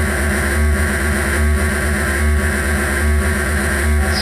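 Live analog noise improvisation from a Doepfer A-100 modular synthesizer with spring reverb and a Moog FreqBox running through a mixer feedback loop: a loud, dense, continuous wash of harsh noise over a deep low throb that swells a little more than once a second.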